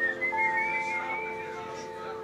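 Live band music: held keyboard chords with a thin, wavering high melody line above them in the first half.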